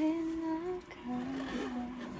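A voice humming a slow tune in held notes, stepping and sliding between pitches.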